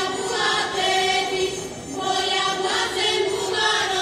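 A group of women singing a Slovak folk song together in sung phrases, with a brief break for breath partway through.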